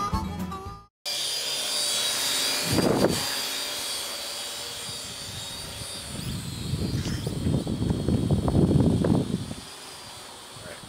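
Parrot AR Drone 2.0 quadcopter hovering and flying, its four rotors giving a steady high-pitched whine, after a harmonica tune cuts off about a second in. A low rushing noise swells and fades between about six and nine and a half seconds in.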